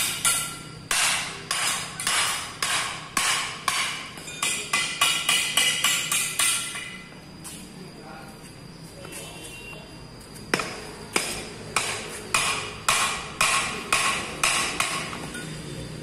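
Hammer striking steel bus brake parts, with sharp, ringing metal-on-metal blows at about two a second, while the rear brake linings are being replaced. The blows stop for about three seconds midway, then resume.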